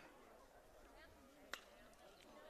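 Near silence, broken about one and a half seconds in by a single sharp crack of a bat hitting a baseball.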